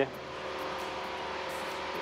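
Cessna 172 single-engine propeller aircraft in flight, its engine and propeller making a steady drone heard inside the cabin.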